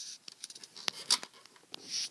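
Plastic Lego parts of a coin-operated candy machine scraping and clicking as a nickel is pushed through the slot mechanism, with a few light clicks about a second in and again near the end.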